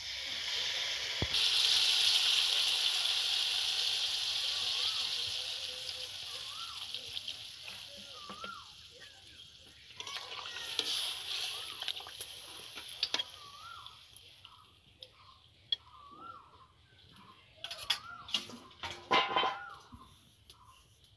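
Water poured into a wok of hot okra and potato curry hits the hot oil with a loud hiss about a second in, which slowly dies down over the next several seconds. Later the curry is stirred with a wooden spatula, bubbling and sizzling more quietly.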